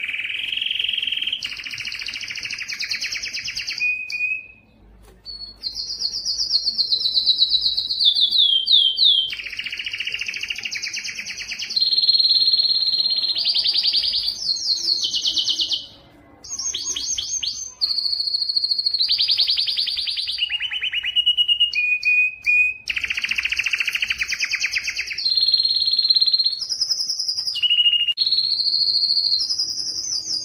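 Domestic canary singing a long song of rapid trills, each a fast run of one repeated note, changing pitch every second or two, with short pauses about five and sixteen seconds in.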